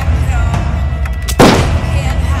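Film score music over a steady low drone, with a single loud bang, like a gunshot or trailer boom, about one and a half seconds in, ringing out briefly.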